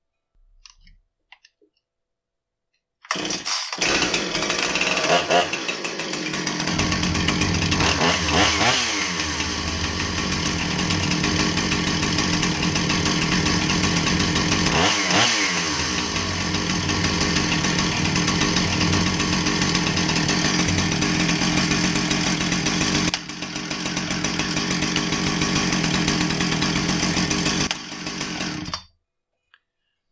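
Husqvarna 455 Rancher chainsaw's two-stroke engine starts about three seconds in and runs steadily, its speed swinging briefly twice, until it is shut off just before the end. The chain keeps turning at idle, a fault that is not caused by the clutch spring.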